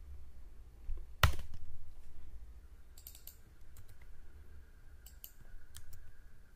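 Computer keyboard typing, with one loud sharp click about a second in and then scattered light keystrokes, over a low steady hum.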